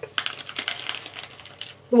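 LECA clay pebbles clicking and rattling against each other and the plastic pot as hands pack them around the orchid's roots, a quick irregular patter of small clicks that stops just before the end.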